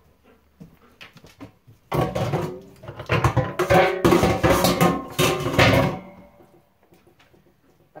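Dogs vocalizing in a run of loud calls between about two and six seconds in.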